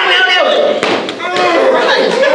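A single sharp smack about a second in, amid a man's speaking voice.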